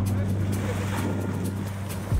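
Boat engine running at a steady low hum, with crew voices in the background; the hum cuts off at the end.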